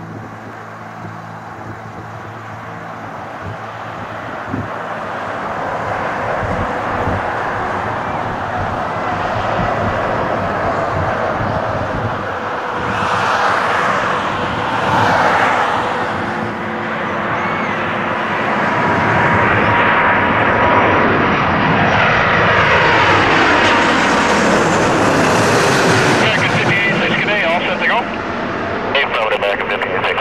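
Airbus A330 jet airliner on final approach, its engine noise growing steadily louder as it comes in low overhead. Near the end, whining tones slide down in pitch as it passes.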